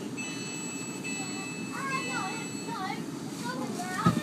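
Inside a Class 450 electric multiple unit moving slowly along the platform: a steady low running rumble, and a steady high-pitched ringing tone that starts just after the beginning and stops after about two and a half seconds. Children's voices can be heard.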